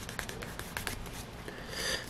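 Cloth rubbed along the edge of a leather coaster, burnishing the freshly applied edge finish: a run of short, faint scratchy strokes, with a longer rubbing stroke near the end.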